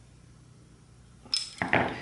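Metal tools and parts clinking on a workshop floor: a sharp clink with a brief ring about a second and a third in, as the screwdriver is set down, then a few lighter knocks as the metal bracket and mount are handled. Before that, only a faint low room hum.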